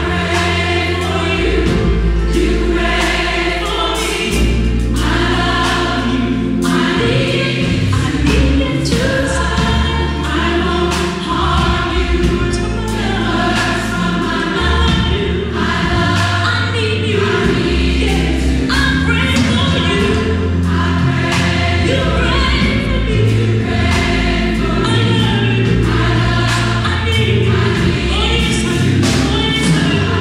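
Gospel choir of young voices singing with a female soloist leading at the microphone, over instrumental accompaniment with a deep, moving bass line and a regular beat.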